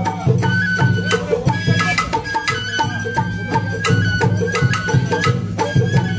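Sawara-bayashi festival music: a shinobue bamboo flute playing held high notes over a steady, driving rhythm of taiko drums and struck hand gongs.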